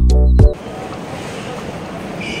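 Background music cuts off abruptly half a second in. A steady, even hiss of indoor ambient noise in an airport terminal follows.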